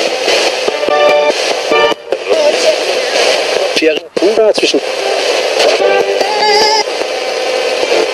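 RadioShack portable FM radio sweeping rapidly through stations as a spirit box: static broken up by split-second fragments of broadcast voices and music, chopping every fraction of a second, with a brief dropout about four seconds in.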